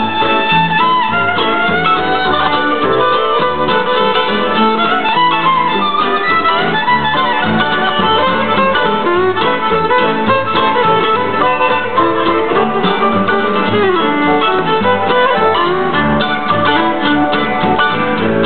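A live string band playing the instrumental opening of a song: fiddle melody sliding between notes over plucked banjo and guitar and a walking upright bass, with no singing yet.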